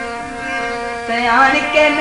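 Punjabi-Saraiki folk song (dohray mahiye): held instrumental notes, then about a second in a singing voice comes in, sliding up in pitch and wavering, and the music gets louder.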